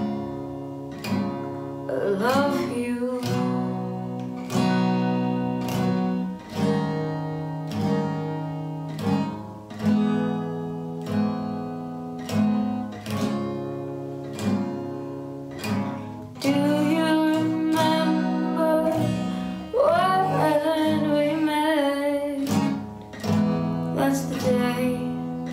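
Yamaha acoustic guitar with a capo, strummed in a slow, steady pattern with a young woman singing over it. Her voice comes in briefly about two seconds in and again for several seconds past the middle, over the guitar.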